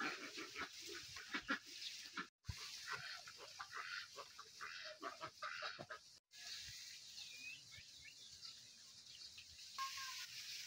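Faint, irregular calls of domestic fowl, with two brief dropouts where the audio cuts out. After about six seconds the calls thin out into a steadier faint hiss with a few thin chirps.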